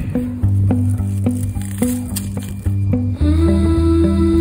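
Background music: a gentle instrumental passage with plucked notes over held low chords, the chord changing about three seconds in.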